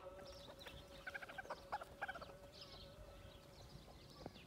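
Domestic chickens clucking, faint: a quick run of short calls from about one to two seconds in.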